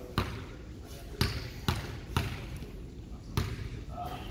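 Basketball being dribbled on a hardwood gym floor: five bounces at uneven spacing, with a longer gap before the last one.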